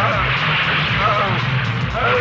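Film song: a voice singing a melody over music, with a dense steady wash of sound behind it.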